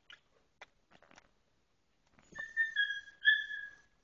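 Faint soft clicks of newborn Alaskan Klee Kai puppies suckling. About two seconds in comes a loud, high-pitched dog whine in two or three drawn-out notes that dip slightly in pitch.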